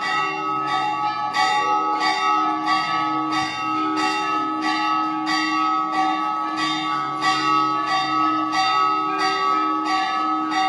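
Temple bells rung for the aarti, struck over and over about three times every two seconds, their tones ringing on between strikes.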